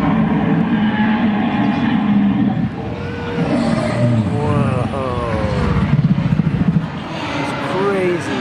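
Deep recorded roars and growls from a life-size animatronic Tyrannosaurus rex, played through its speakers, with a low pulsing growl near the end, over the chatter of a crowd.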